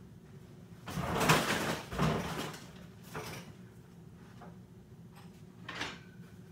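Off-camera scraping and knocking of things being moved about in a cluttered workshop: a long scrape about a second in, a shorter one at two seconds, and a brief knock near the end.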